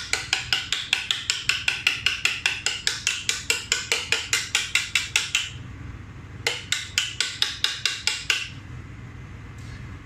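A polycarbonate chocolate mould rapped over and over with a scraper, about six quick taps a second. The run stops about five and a half seconds in, then a shorter run follows. The mould is held upside down, and the tapping knocks the excess tempered white chocolate out to leave thin bonbon shells.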